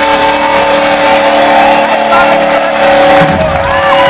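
A live rock band's final note held and ringing steadily through the amplifiers as the song ends, under loud audience cheering with whistles and shouts. The lowest part of the held note stops about three quarters of the way through.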